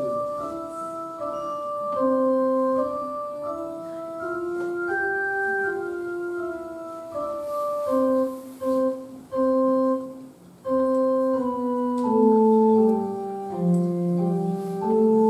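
Electronic keyboard playing a slow melody of steady held notes over chords, in an organ-like sustained tone, with a few detached notes and short gaps between them about two-thirds of the way through.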